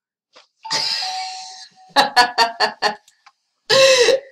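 A person laughing in a quick run of short bursts from about halfway in, after a brief held sound with a steady pitch about a second in.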